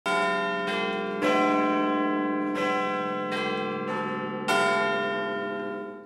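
Large tower bells chiming a slow sequence of about seven notes, each strike ringing on into the next, the last dying away near the end.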